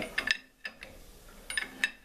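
A wrench turning the nut of a harmonic balancer installer tool while the balancer is drawn onto the crankshaft, giving a few sharp metallic clicks near the start and again about a second and a half in, with a quiet gap between.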